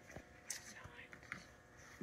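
Faint paper rustles and a few light clicks as the pages of a coloring book are turned and handled by hand.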